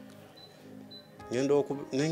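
A short pause with faint background music, then a man's voice starts about halfway through.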